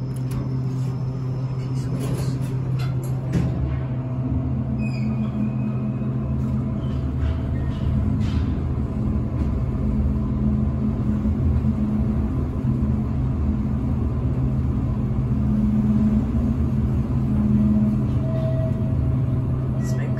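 Traction elevator cab riding between floors: a steady hum and rumble from the car and its machine, with a few clicks in the first seconds and a short whine about five seconds in.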